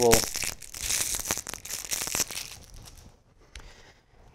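Crinkling and tearing of plastic packaging as a new marker pen is unwrapped, dying away after about two and a half seconds, with a couple of light clicks near the end.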